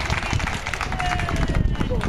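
Onlookers' scattered hand-clapping and indistinct voices, over a low rumble of wind on the microphone.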